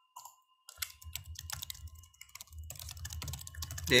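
Typing on a computer keyboard: a fast, uneven run of key clicks that starts just under a second in.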